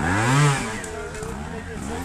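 Trials motorcycle engine given a sharp blip of the throttle: the pitch rises and falls back within about the first second, the loudest part. Then it keeps running with smaller rises and falls in revs.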